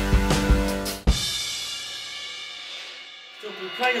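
Ludwig drum kit played with kick, snare, hi-hat and cymbals over a backing track, ending on a last hit about a second in. The kit and music then ring out and fade, and a voice starts near the end.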